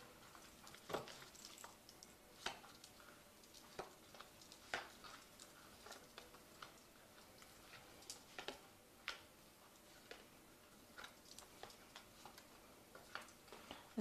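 Near silence with faint, irregular light clicks and taps, about a dozen spread unevenly through the stretch.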